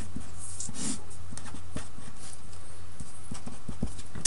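Steady low electrical hum with light, irregular taps and clicks of a pen writing out a formula.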